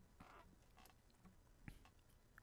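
Near silence: room tone with a few faint, short clicks, the clearest one near the end.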